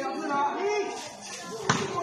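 A single sharp smack of a volleyball about three-quarters of the way in, over the voices of players and onlookers.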